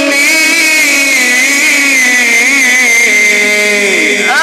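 A man's voice in melodic Quran recitation (mujawwad style, sung in maqamat), holding one long ornamented note that wavers in pitch and slides down to a stop near the end.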